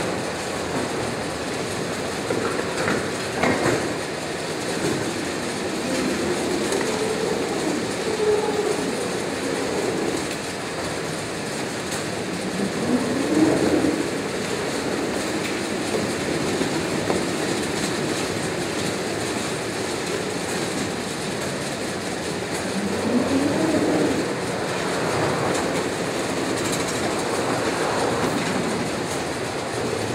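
Roach Gator Singulator roller conveyor running, its steel rollers turning as cardboard boxes ride over them and are separated into single file: a steady rolling noise with a few knocks as boxes bump along.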